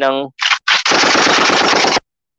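Machine-gun fire sound effect: a short burst, then rapid continuous automatic fire that stops abruptly at the end.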